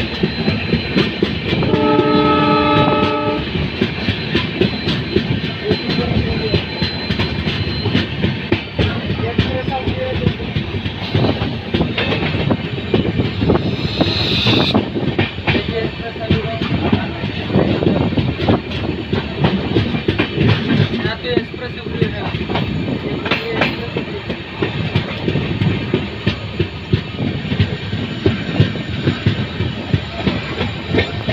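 Passenger coaches running at speed, heard from an open coach doorway: steady wheel-and-rail running noise with rapid clicks over the track and rushing air. About two seconds in, the WDP4D diesel locomotive's horn sounds once for about a second and a half.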